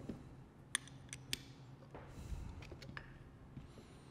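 Light metallic clicks and taps, a handful of sharp ones in the first second and a half and fainter ones later, from small valve parts and a hand tool being handled during disassembly of an auto air valve, with a brief soft rustle about two seconds in.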